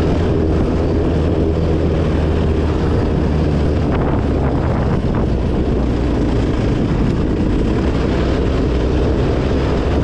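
Honda 450's single-cylinder four-stroke engine running at a steady throttle while the bike is ridden along a gravel trail.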